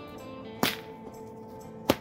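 Five-foot Swordguy Builds Tachi-style bullwhip cracking twice, about a second and a quarter apart, over background music.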